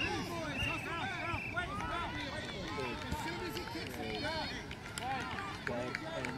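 Overlapping voices of children and spectators calling and shouting across a grass field during a youth soccer game, none of it clear speech. A high-pitched child's call is held for about a second near the start.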